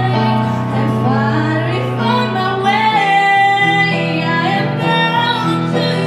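A woman singing a slow pop ballad into a microphone, holding long notes with vibrato, accompanied by sustained chords on a Kawai piano.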